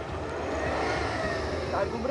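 Toyota Land Cruiser 300's engine revving up and easing back down as the SUV, stuck in deep snow, tries to drive out. The pitch rises to a peak about a second in, then falls.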